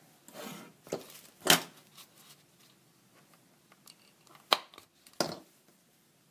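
A handheld hole punch snapping through paper cards about four times, the loudest stroke about a second and a half in and two more near the end. Paper rustles between the strokes.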